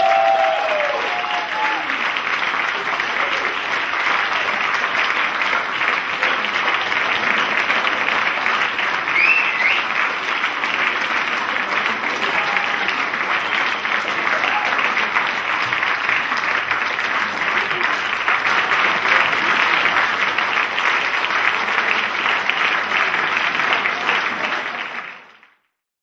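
Audience applauding steadily after a wind band's performance, with a few shouts near the start. The applause fades out at the very end.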